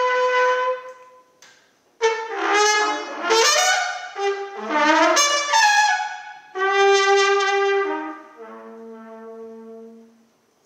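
Solo trumpet improvising: a held note fades out about a second in, and after a short pause comes a quick run of changing notes, then a longer held note, and softer, lower tones near the end.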